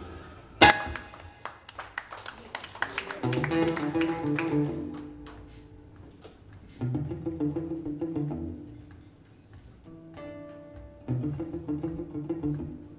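Acoustic guitars playing live: a sharp struck chord just after the start, then phrases of plucked notes separated by quieter pauses.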